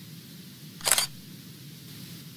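Camera-shutter sound effect: a quick double click about a second in, over a steady background hiss.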